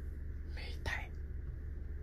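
Steady low hum in a car cabin, with one short breathy hiss just after half a second in.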